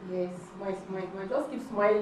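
A woman talking; the words are not made out.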